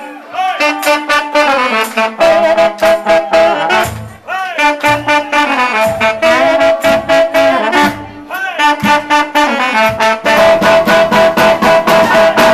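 Live band playing a song, led by a horn section in sustained melodic phrases over a steady drum beat, with short breaks in the horn line about four and eight seconds in.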